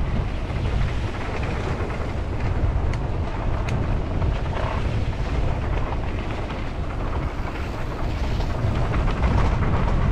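Wind buffeting the camera microphone over the rumble of mountain bike tyres rolling down a dirt trail, with a couple of faint sharp clicks about three and nearly four seconds in.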